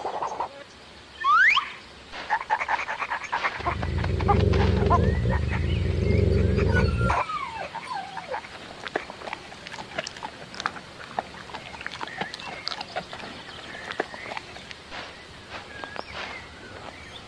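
Cartoon dog sound effects: a short rising whine, then a low growl lasting about three and a half seconds, followed by whimpering glides. After that comes a long run of small clicks and crunches as kibble is eaten from a bowl.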